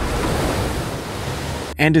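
A great white shark breaching, with seawater splashing and rushing that slowly fades. A man's narrating voice comes in near the end.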